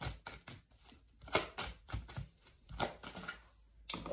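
A tarot deck being handled by hand: a run of light card snaps and flicks at irregular intervals, a few louder than the rest.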